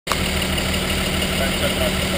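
A truck engine idling steadily, with an even low throb.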